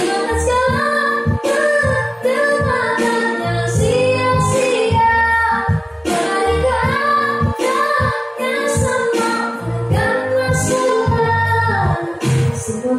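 A girl singing an Indonesian pop ballad solo into a handheld microphone, holding long notes, over an instrumental backing track with low bass notes.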